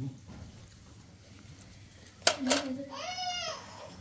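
Two sharp clicks about two seconds in, then a small child's high-pitched drawn-out vocal sound lasting about a second and a half.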